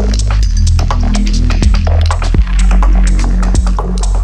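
Electronic music outro with no vocals: a deep, sustained synth bass that shifts notes every second or so, under sharp, scattered percussive clicks.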